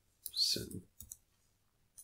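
A few faint, sharp computer mouse clicks, a cluster about a second in and another at the end.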